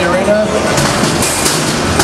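Combat robots clashing: from about a third of the way in, a burst of sharp metallic clatter and scraping as one robot is hit and thrown, over the voices of the crowd.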